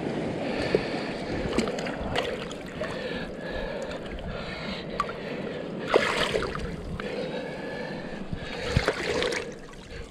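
Shallow rock-pool water sloshing and splashing around a gloved hand groping under submerged rocks and kelp, with scattered small clicks and a couple of stronger sloshes about six and nine seconds in.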